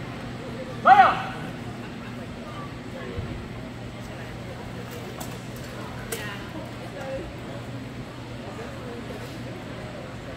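A loud shouted call about a second in, typical of the marshal's command to begin an armored-combat bout. It is followed by a steady hall hum with a few light knocks and one sharp crack about six seconds in as the fighters exchange blows with rattan swords and shields.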